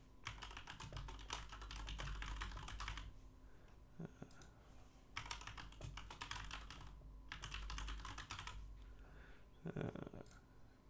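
Typing on a computer keyboard: two runs of quick key clicks a few seconds each, with a pause of about two seconds between.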